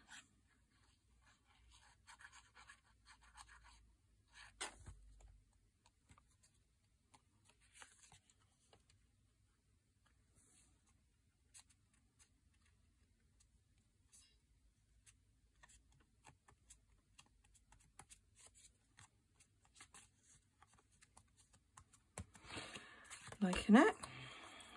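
Faint rustling and scratching of paper and card being handled as a small paper piece is glued and pressed down by hand, with a single knock about five seconds in.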